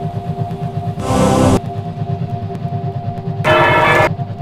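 Electronic film soundtrack: a fast, throbbing low drone under two held tones, with two short, loud, harsh bursts, one about a second in and one near the end.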